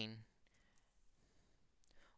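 Near silence with a faint click or two near the end, from a stylus on a drawing tablet as a question mark is written on the screen.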